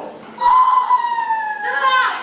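A woman's long, loud, high-pitched scream that slides slowly down in pitch, followed near the end by a second, shorter cry.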